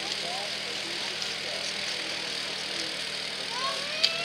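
Steady outdoor hiss across the slope with a faint low hum, and a few faint distant voices of spectators.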